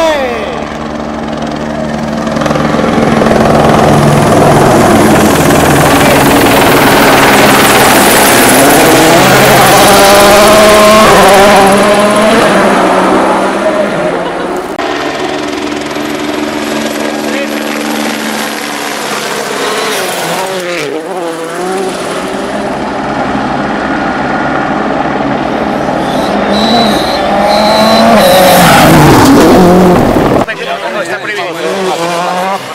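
Rally cars passing at full attack on a gravel stage, engines revving hard and rising and falling in pitch through gear changes, over the noise of tyres on loose gravel. Several passes follow one another, with abrupt changes of sound between them.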